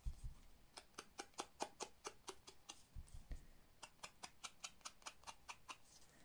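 Sponge dauber dabbed and scraped along the edge of a small card stock piece to ink it, a quick run of faint ticks about four or five a second that stops shortly before the end.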